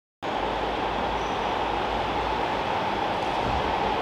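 Steady background rumble and hiss of an ice rink hall, even in level, with no music or voices.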